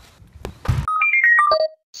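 An editing sound effect: a short whoosh, then a quick electronic chime jingle of about six notes falling in pitch.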